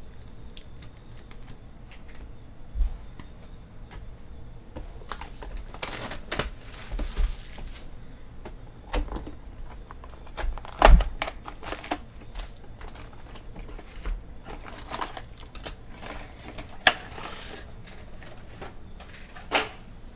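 A cardboard trading-card hobby box and its foil packs being handled on a table: scattered taps, knocks and short rustles, the loudest knock about eleven seconds in.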